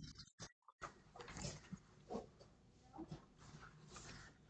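Near silence: faint room tone over a video-call line that cuts out completely several times in the first second, with a few faint short noises afterwards.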